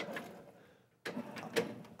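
Faint taps and scrapes of chalk on a blackboard, a few separate strokes, with a brief silent gap about a second in.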